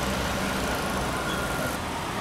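Street traffic noise: a motor vehicle's engine running close by over a steady hum of road noise.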